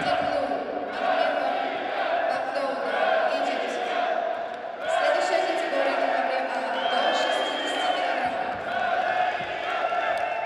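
Men's voices shouting over one another during a wrestling bout in a large echoing hall, with no clear words. About seven seconds in, a referee's whistle sounds one held high note for about a second.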